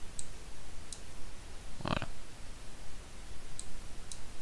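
Three faint computer mouse clicks, short and light, spread across the moment, over a low steady background hum.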